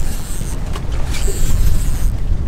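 Wind buffeting the microphone on an open boat at sea: a steady low rumble with a hiss above it and a couple of faint clicks.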